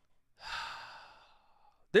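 A man's long sigh into a close microphone: a breathy exhale starting about half a second in, loudest at its onset and fading away over about a second.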